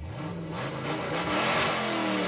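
Recorded car engine revving, its pitch climbing and easing as it grows louder.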